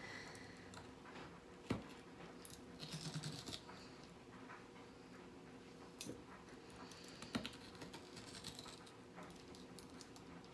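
Faint scraping and clicking of a metal melon baller scooping out the flesh of a raw turnip, with a few sharper clicks as pieces are dropped into a bowl.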